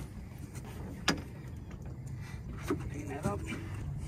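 A single sharp knock about a second in, over a steady low rumble, with a few brief, faint voices in the second half.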